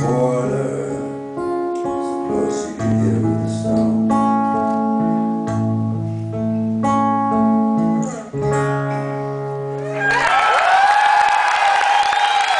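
Guitar playing the song's closing chords, each one held and ringing for a second or more. About ten seconds in, the chords stop and the audience cheers.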